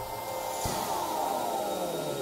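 Logo-sting sound effect: a whoosh with a low hit about two-thirds of a second in, then several tones gliding downward in pitch together.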